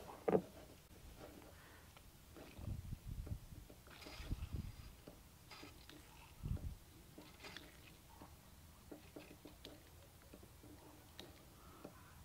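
Rubber fuel-line primer bulb being squeezed by hand, a few faint squishes and soft thumps a second or two apart, pumping fuel up to the carburetor of a 1980s Mercury 50 hp two-stroke outboard to check the fuel system for leaks.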